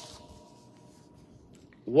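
Paper sheets rustling as they are handled, a brief dry hiss at the start, then quiet room tone with a faint steady hum.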